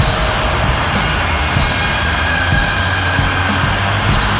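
Loud free-improvised noise rock: a dense distorted wall of sound over a steady low bass tone, with drums and a high hissing wash that cuts in and out about once a second.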